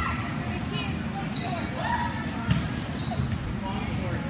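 A volleyball smacks once, sharply, about two and a half seconds in, in a large gym hall, over faint voices in the background.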